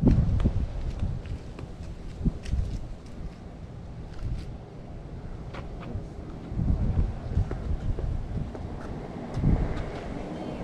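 Wind buffeting the camera microphone in low rumbling gusts, strongest at the start, about two thirds of the way in and near the end.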